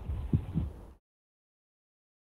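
Low rumble with two short, soft thumps on an open call microphone, then the audio cuts off about a second in to complete digital silence.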